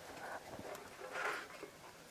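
Quiet handling sounds at a clay cooking pot on a hearth: a light knock and a brief soft hiss.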